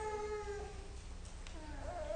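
A baby whining in a long, drawn-out cry that fades about half a second in, then starts another rising whimper near the end, over a low steady hum.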